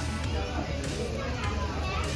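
Background voices of people and children chattering in an airport terminal over a steady low hum, with music faintly under them.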